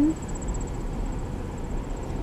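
Car cabin noise while driving slowly: a steady low rumble of engine and tyres, with a faint high, finely pulsing trill over it.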